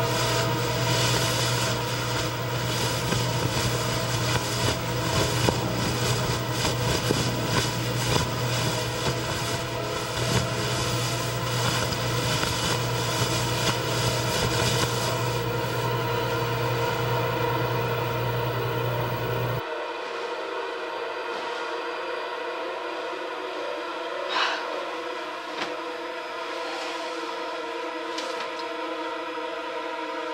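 Eerie horror-score drone: layered held tones over a low hum and a crackling texture. About twenty seconds in, the low hum and crackle cut out, leaving the thinner high tones, with a short rising swell a few seconds later.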